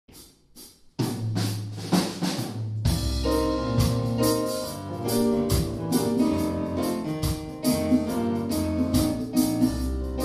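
A live jazz band with piano, drum kit, congas and keyboard starts a tune. After two faint clicks, percussion and a low bass come in about a second in, and piano and keyboard chords join about three seconds in, over a steady beat.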